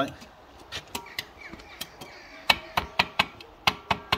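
A run of light, irregular taps from a bricklayer's trowel, knocking freshly laid bricks down through a spirit level to bring them level on their mortar bed. About a dozen short knocks, the sharpest about two and a half seconds in.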